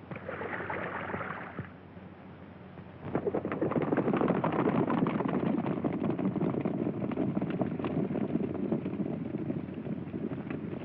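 Hoofbeats of galloping horses on an old film soundtrack, starting about three seconds in as a dense, rapid drumming that carries on steadily.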